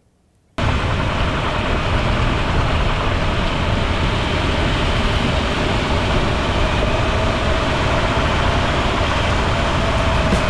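Road and tyre noise with wind rush from a car driving along, picked up by a camera mounted under the car by the front suspension. It starts about half a second in and stays steady, with a deep rumble underneath.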